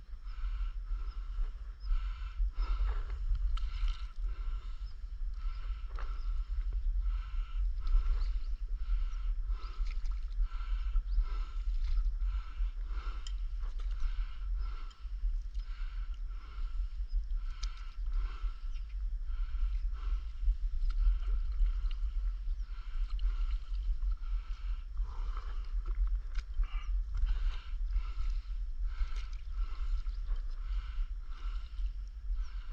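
Stand-up paddleboard paddle strokes dipping and pulling through river water at an even, repeating pace, with water lapping at the board. A steady low rumble lies under it all.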